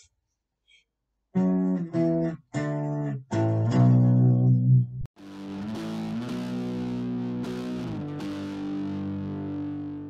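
Electric guitar playing power chords moved to different positions on the neck: first a run of short chords, the last one louder and lower, then from about five seconds in a long ringing chord that slides to new positions several times.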